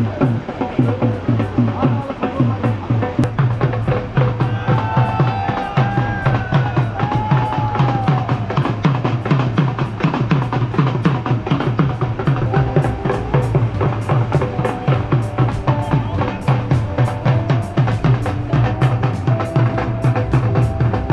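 Music with a steady, fast drum beat and a melody over it.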